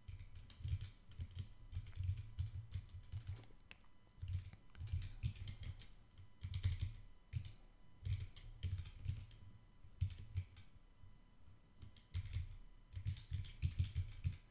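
Typing on a computer keyboard in quick bursts of keystrokes with short pauses between them, each keystroke clicking with a dull low thud.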